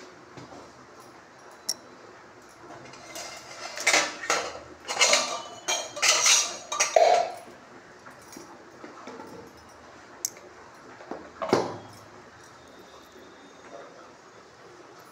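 Metal kitchen pots and utensils clattering and clinking as they are handled, in a run of clanks through the middle and one more clank near the end.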